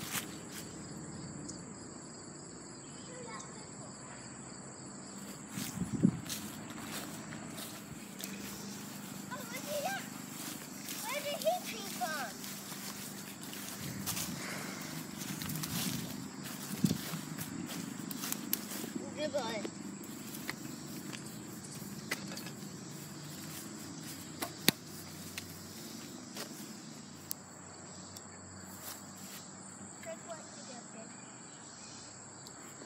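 Outdoor ambience: faint, indistinct voices now and then over a steady high insect drone, with a few sharp knocks of handling, the loudest about six seconds in and near the end.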